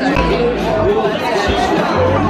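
Many voices chattering at once over background music with a steady bass line.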